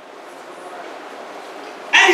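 Faint room noise during a pause in speech, then a woman's amplified voice through a microphone starts loudly just before the end.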